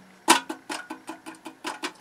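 A quick run of about a dozen light clicks and taps over a second and a half, some with a brief low ring: a thin aluminium chassis being handled in the hands.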